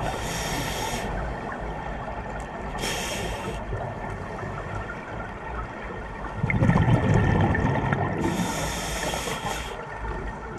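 Scuba diver breathing through a regulator underwater: three short hissing inhalations, near the start, about 3 s in and about 8 s in, and a louder low rush of exhaled bubbles about six and a half seconds in.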